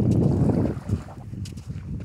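Wind buffeting the microphone: an uneven low rumble that eases off about two-thirds of a second in.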